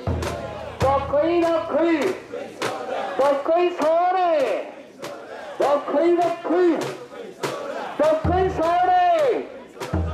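Mikoshi bearers chanting together in loud, rhythmic shouted calls as they carry the portable shrine. Their voices rise and fall in repeated phrases, with sharp clicks keeping a quick beat.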